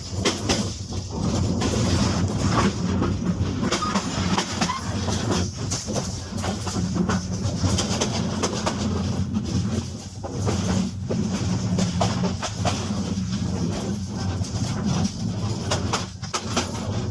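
Dubbed-in train sound effect: a train running on rails, with a steady low rumble and frequent sharp clicks.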